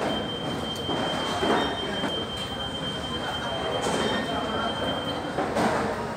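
A single steady, high-pitched electronic alarm tone from security screening equipment, held for about six seconds and cutting off near the end. Voices and general bustle in a large hall run underneath.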